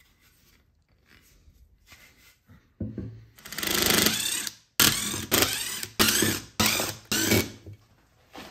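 DeWalt cordless driver driving screws through a metal faceplate into a wooden bowl blank. There is a short burst about three seconds in, then one long run of the motor, then five short bursts as the screws are snugged down.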